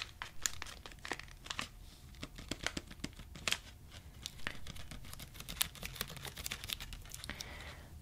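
Plastic wrapper of a Reese's Peanut Butter Cups packet crinkling under the fingers, soft irregular crackles and clicks, busiest in the first second or two and scattered after.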